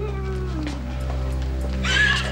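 A distraught woman's sobbing wail, trailing down in pitch and fading, then breaking into a fresh cry near the end.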